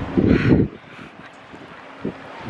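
Wind buffeting the microphone: a loud low rumble for about the first half second, then a faint steady wind hiss.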